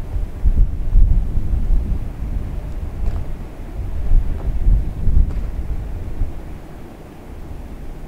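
Wind buffeting the camera microphone, an uneven low rumble that swells in gusts about a second in and again around the middle.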